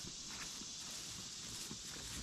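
Faint footsteps on grass: soft, irregular thuds over a steady high background hiss.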